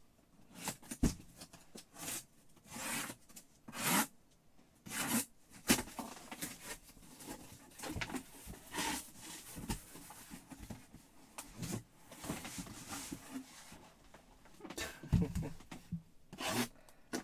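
A cardboard shipping case being cut open and unpacked: irregular tearing, scraping and rustling of cardboard and tape, with a few knocks as boxes are pulled out.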